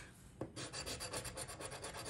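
A large coin scraping the scratch-off coating from a paper lottery ticket in rapid, even strokes, starting about half a second in.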